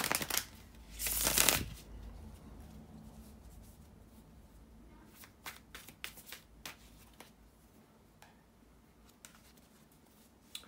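A deck of tarot cards being riffle-shuffled: a rapid flutter of cards at the start and again about a second in. After that come a few separate soft card clicks and taps as the deck is squared and handled.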